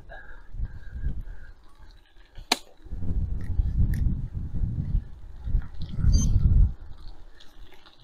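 Wind buffeting the microphone of a moving bicycle, rising and falling in gusts as it rides off along a lane, with a sharp click about two and a half seconds in.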